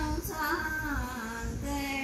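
An elderly woman singing a devotional bhajan solo, unaccompanied, holding long notes and sliding down in pitch to a lower held note.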